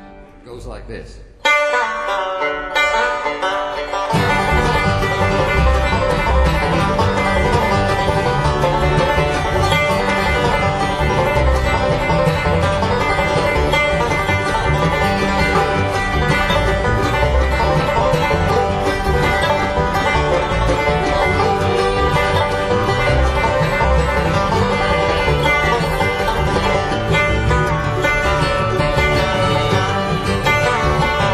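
Live acoustic bluegrass band starting a tune: a banjo leads in about a second and a half in, and the full band with guitar and upright bass comes in about four seconds in and plays on steadily.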